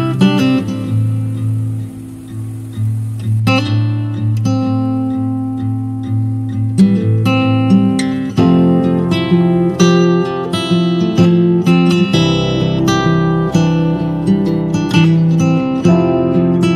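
Background music of plucked notes over sustained bass notes, the notes coming quicker and busier from about halfway through.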